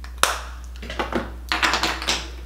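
Small hard objects being handled: one sharp click, then a few irregular clusters of quick taps and clicks.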